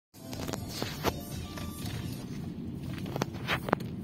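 Low rumble of a car's cabin while driving, with several sharp clicks and knocks scattered through it, the loudest near the end.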